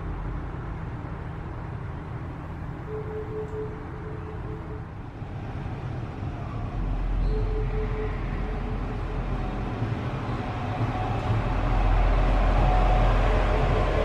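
An SKM SA136 diesel railcar pulling into the station on the track alongside, its rumble growing sharply louder from about halfway through. It is heard from inside a stationary tram, over a steady low rumble with short faint hums.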